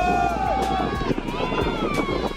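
People shouting during a football play: long, drawn-out calls that rise and fall in pitch.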